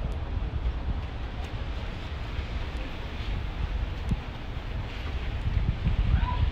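Wind buffeting the microphone: an uneven low rumble over a steady outdoor background noise.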